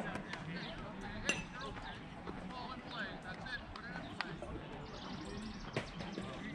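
Faint, distant voices of players and spectators chattering around a ballfield, with a few short sharp knocks.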